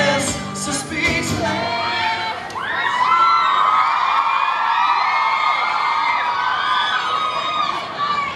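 Live acoustic set: two acoustic guitars strummed under singing, then about three seconds in the guitars drop away and the audience takes over, many voices singing along and screaming together loudly.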